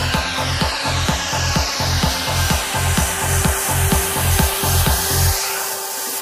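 Minimal techno from a DJ mix: a steady bass-and-kick pulse with a bright hissing noise sweep layered over it. The bass and kick drop out about five seconds in.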